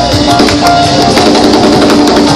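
Loud live band music: a drum kit and bass playing an upbeat groove, with audience clapping along.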